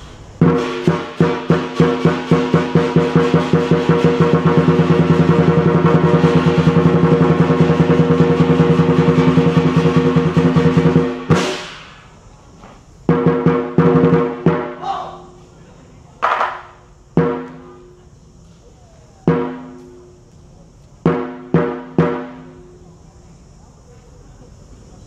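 Lion dance drum and cymbal ensemble: drum strokes quicken into a fast, continuous roll lasting about ten seconds, which ends in a sharp crash. After that come a few short clusters of strokes and single hits, with pauses between them.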